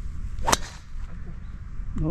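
A single sharp crack of a driver striking a golf ball off the tee, about half a second in, over a low rumble of wind on the microphone.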